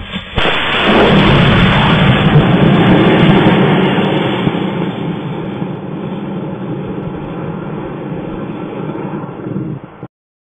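Model rocket motor igniting and launching right beside the microphone: a sudden loud rushing noise begins about a third of a second in, stays loudest for the first few seconds, then settles into a quieter, steady rush.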